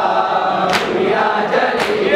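Male voices chanting a nauha (Shia lament) in chorus, with rhythmic matam chest-beating strikes about once a second, twice within these seconds.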